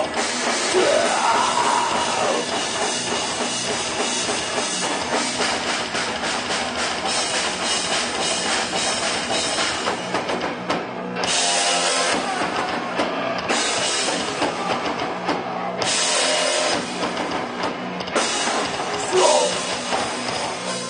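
Heavy metal band playing live: electric guitars over a drum kit, loud and dense, with stretches of brighter crashing from about halfway in.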